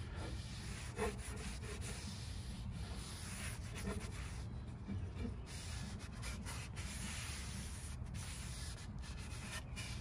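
Cloth rag rubbing along a wooden tool handle, wiping off the excess of a freshly applied pine tar and linseed oil finish. A steady rubbing with a few small knocks.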